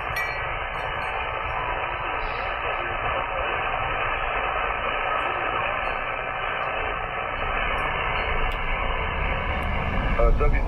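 Icom IC-7300 transceiver receiving single-sideband on 14.235 MHz (20-metre band): steady hiss of band static from its speaker, cut off sharply above about 3 kHz by the receive filter, with a few faint steady whistles in it.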